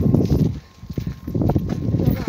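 Low rumbling noise on a handheld phone's microphone from wind and handling while walking, in two bursts with a short dip in between.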